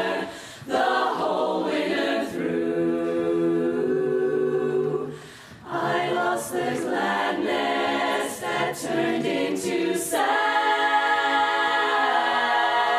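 Women's barbershop chorus singing a cappella in close four-part harmony, holding sustained chords. There are short breaths between phrases about half a second in and again around five seconds.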